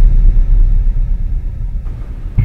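A loud, deep sound-effect rumble, slowly dying away, the tail of a sudden dramatic boom.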